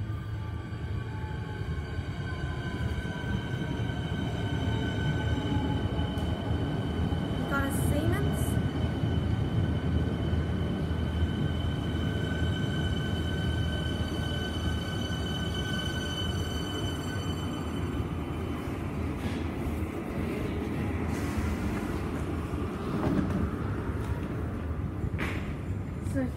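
Siemens electric suburban train pulling into the platform, its motor whine falling in pitch over the first few seconds. Steady high-pitched tones ride over a low rumble and fade out about two-thirds of the way through, as the train comes to a stop. A few sharp clicks follow near the end.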